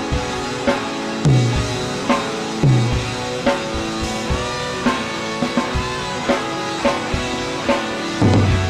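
Pearl drum kit played along to a prog rock backing track with guitar, in 5/8 time, with frequent sharp drum and cymbal hits over the music.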